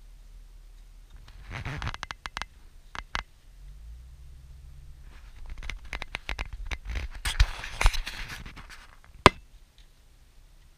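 Scraping and clicking close to the microphone in two spells, the second longer, ending with one sharp click near the end, over the low steady hum of the car cabin.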